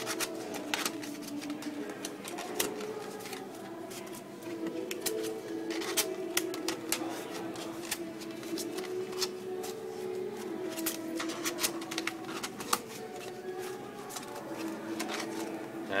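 Thin plastic puzzle-lamp pieces being flexed, bent and hooked together by hand: rustling with many scattered sharp clicks as the tabs snap into each other.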